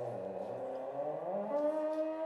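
Theremin tone sliding in pitch as a dog moves its head near the pitch antenna: it wavers low, then glides up about three-quarters of the way through and holds a higher note.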